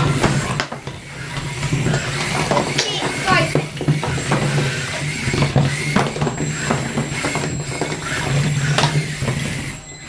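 Small combat robots fighting: a steady low hum that comes and goes, likely from the dome spinner's weapon, with many clicks and knocks as the robots hit each other and the arena walls. Voices can be heard in the background.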